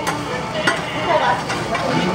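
Okonomiyaki batter and shredded cabbage sizzling on a hot teppan griddle, with a few sharp clacks of a metal spatula patting and shaping the mound.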